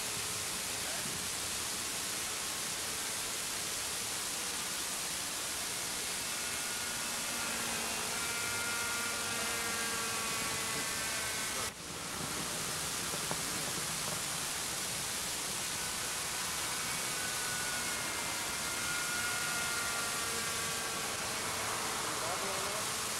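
Steady hiss with the faint, distant whine of a GMP King Cobra radio-controlled model helicopter's engine flying overhead, coming and going in two stretches. There is a brief dropout near the middle.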